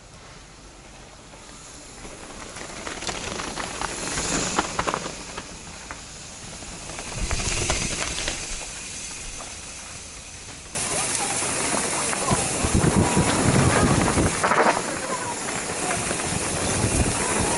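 Mountain bike tyres rolling fast over a loose gravel and dirt downhill trail, with rattles and crackles from the stones and the bike. The sound swells as riders come closer, then jumps suddenly louder about eleven seconds in, to close-up riding noise with wind rushing over the camera microphone.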